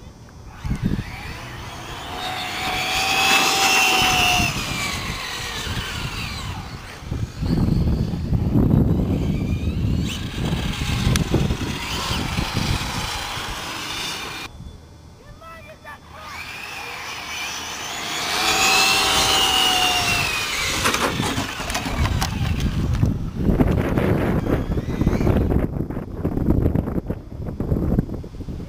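Radio-controlled cars racing on asphalt, with a high motor whine that rises and then falls in pitch twice, about sixteen seconds apart, over a rumble that swells and fades as the cars come and go.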